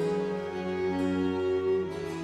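Early-instrument string ensemble with harpsichord playing a slow sinfonia: bowed violins and low strings holding chords that change about every half second to second.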